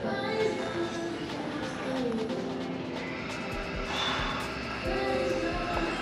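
Background music with held melodic notes.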